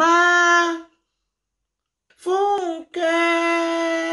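A woman's voice singing long held notes. A steady note stops about a second in; after a pause comes a short phrase that bends up and down, then a long steady note from about three seconds in.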